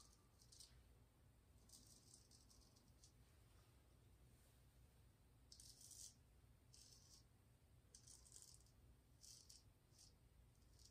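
Faint rasping of a Gold Dollar straight razor scraping lathered stubble off the cheek in several short strokes, each about half a second long.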